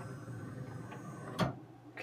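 Laser cutter's stepper motors driving the head and gantry to the home position, with a steady running sound. It ends in one sharp click about one and a half seconds in as the head reaches home and stops.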